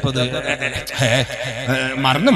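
A man's voice over a microphone giving a religious talk, delivered in a drawn-out, sing-song way.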